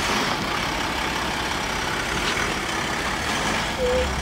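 Steady street noise with a motor vehicle engine idling.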